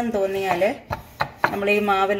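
A woman talking, with three sharp wooden knocks around the middle from a wooden rolling pin and dough being handled on a wooden board.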